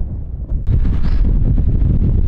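Wind buffeting the microphone: a loud, low, uneven rumble that gets louder about half a second in.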